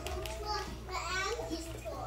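Young children's voices speaking into stage microphones.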